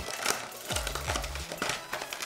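A small cardboard retail box being worked open by hand: rustling and crinkling of card and paper.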